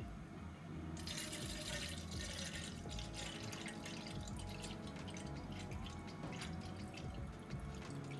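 Hot water poured in a thin stream into an empty stainless steel gooseneck drip kettle, splashing and drumming on the metal as it fills. The splash is loudest about a second in, then settles to a steady pour.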